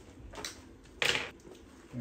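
Laptop bottom cover being set down on a hard table: a light knock about half a second in, then a short, sharp clatter about a second in.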